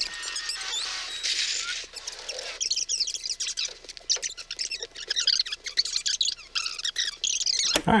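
Fast-forward transition sound effect: dense, high-pitched chirping and warbling like sped-up audio, marking a skip ahead in time.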